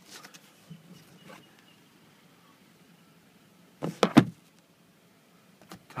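A car sun visor and its vanity-mirror cover being handled: a few light plastic clicks, then two sharp clacks close together about four seconds in as the visor parts snap shut.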